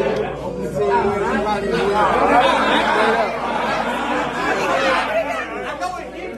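Many people talking at once in a crowded room: loud, overlapping chatter in which no single voice stands out.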